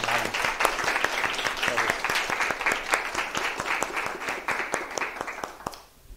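Audience applauding, a dense run of hand claps that thins out and stops shortly before the end.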